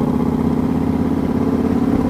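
A 2009 Yamaha Raider S's air-cooled V-twin running steadily at a low, even pace, its pulsing note holding one pitch with no revving.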